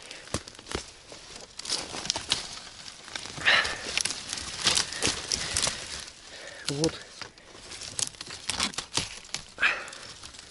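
Twigs and branches rustling, scraping and cracking, with dry leaf litter crunching, as a person pushes through a dense thicket of bare shrub branches at close range. The sound is an irregular run of sharp crackles.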